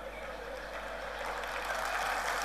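Audience applause starting up and swelling steadily louder.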